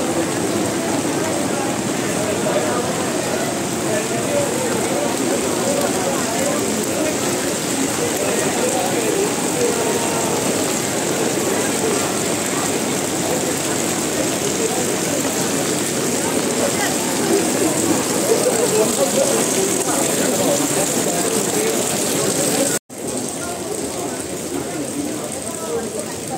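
Crowd chatter: many people talking at once in a continuous babble, no single voice standing out, with a steady high hiss underneath. About 23 seconds in the sound cuts out for an instant, and the chatter is quieter after it.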